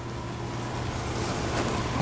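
Lecture-room background: a steady low hum, with a rushing noise that swells gradually louder.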